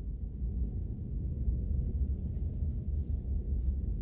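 Low, steady rumble of a car driving slowly, heard from inside the cabin.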